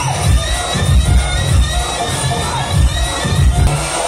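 DJ sound system, one bass cabinet and two tops, playing a heavy bass beat while a crowd shouts and cheers over it.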